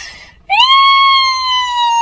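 A loud, high-pitched comic crying wail that starts about half a second in, rises briefly, then holds and slowly sinks in pitch. A short fading hiss comes before it at the very start.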